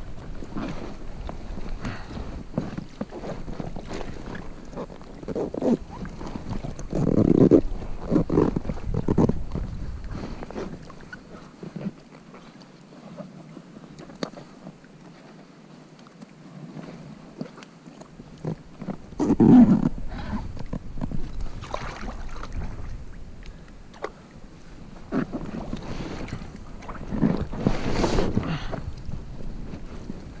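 Water splashing and lapping around a kayak with wind on the microphone, coming in several louder, irregular surges.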